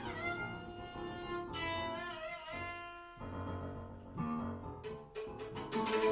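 Free improvised duet of violin and digital keyboard: sustained violin notes over keyboard playing, with a downward slide in pitch at the start and a few sharp struck notes near the end.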